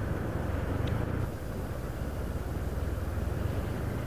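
Steady engine drone and road noise from a vehicle travelling along a paved road, heard from on board.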